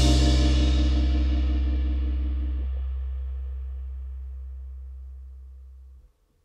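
Final chord of a band take ringing out: a low electric bass note and a cymbal wash fade steadily, while higher sustained notes stop a little under halfway through. By the end it has faded almost to nothing.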